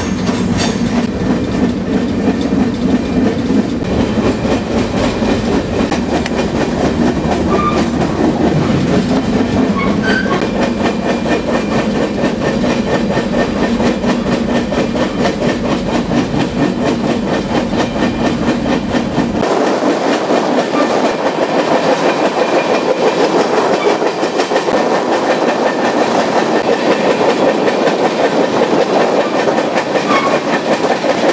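Steady rumble and clatter of a moving freight train, heard from on board an open-sided freight car. About two-thirds of the way through, the deep rumble drops away suddenly and a lighter, higher rattle carries on.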